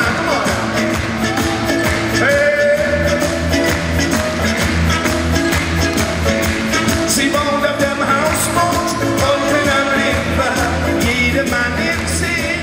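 Live pop song: a man singing over a full band with a steady drum beat.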